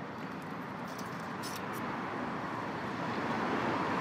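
Street traffic: a steady noise of passing vehicles that grows slowly louder toward the end, with a few faint clicks about a second and a half in.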